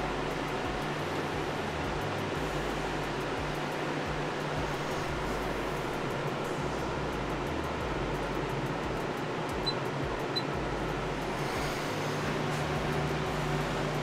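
Steady whoosh of a fan with a low, even hum under it. Two faint, short, high blips come about ten seconds in.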